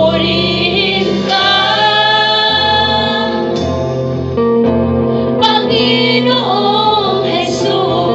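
Live worship band playing a Tagalog praise song: a woman sings lead into a microphone over electric guitar, bass guitar and drums.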